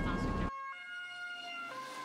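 Two-tone siren of a fire service vehicle, stepping between a lower and a higher note about once a second. For the first half second it sounds under loud engine and road rumble from inside the cab.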